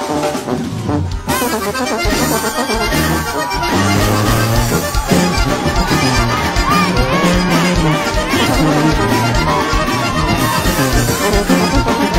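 Mexican norteño-style band music with accordion over a steady bass beat, a track change or cut about a second in.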